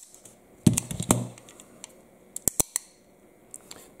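Sharp metallic clicks of 1911 pistols being worked by hand: the hammer is cocked from its half-cock notch and the parts clack. About eight separate clicks, a pair near the start and a quick cluster past the middle.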